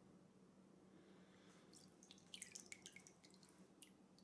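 Faint drips and small splashes of water in a plastic bowl as a hand is lifted out of it, a scatter of light patters starting about halfway through; near silence before that.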